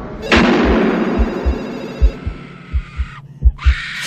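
Intro sting sound design: deep bass thumps in a heartbeat-like rhythm, two or three a second. A sudden swelling whoosh comes in about a third of a second in, fades and cuts off after about three seconds, and a second whoosh builds to a loud hit at the end.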